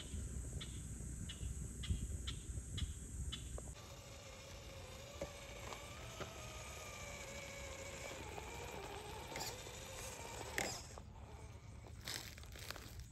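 Low wind rumble with a run of light, evenly spaced ticks, then, after a cut about four seconds in, the faint whine of an Axial SCX10 III RC crawler's electric motor and drivetrain, wavering slightly in pitch as the truck crawls.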